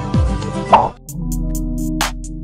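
Background music with falling bass notes ends in a short loud hit just under a second in. After a brief gap a different backing track starts, with steady held notes and a light ticking beat.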